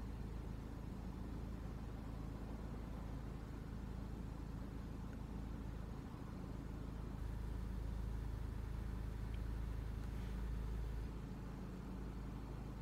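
Car engine idling, heard from inside the cabin as a steady low rumble that grows a little louder for a few seconds past the middle.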